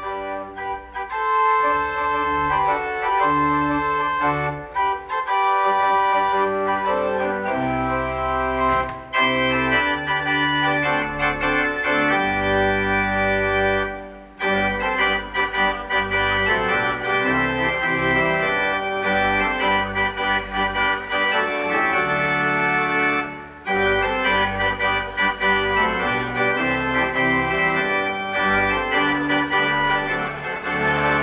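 Church organ playing the closing hymn in sustained chords, with brief breaks between phrases about 14 and 23 seconds in.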